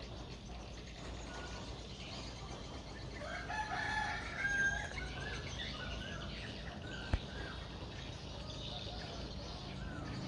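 A rooster crowing faintly once, about three and a half seconds in, over a quiet outdoor background with small bird chirps. A single sharp click comes about seven seconds in.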